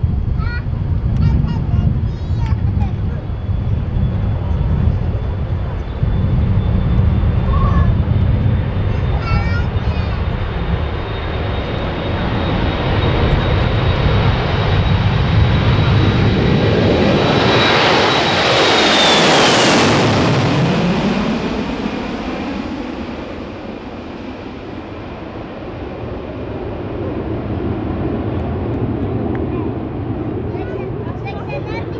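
Airbus A321 twin jet engines at full takeoff thrust: a steady heavy rumble with a thin high fan whine as the airliner rolls towards the microphone. It is loudest as it passes low overhead about 18 to 20 seconds in, where the whine drops sharply in pitch. The roar then fades as it climbs away.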